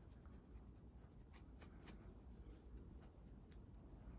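Faint, irregular scratching on a scalp through thick hair, dandruff being scratched loose, heard over a low room hum.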